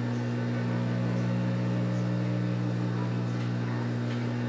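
Industrial overlock machine's electric motor humming steadily at idle, with no stitching.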